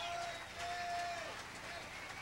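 Faint held pitched tones, one lasting about a second, over low voices, with the band not playing.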